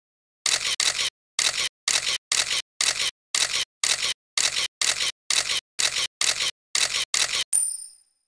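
Title-animation sound effect: about fifteen short, sharp clicking swishes at a steady pace of roughly two a second, one for each letter appearing. The run ends in a brief high ringing tone.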